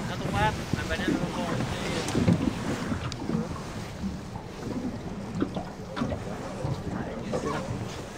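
Wind rumbling on the microphone on an open boat on the water. Faint voices murmur near the start and a couple of seconds in.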